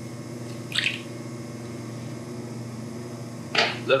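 Electric potter's wheel running with a steady hum while wet clay is worked by hand and with a sponge. A short wet squish comes about a second in.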